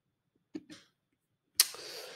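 Mostly quiet room with a couple of faint clicks, then about one and a half seconds in a sudden loud, breathy burst from a man, a cough-like rush of breath that carries on for about a second.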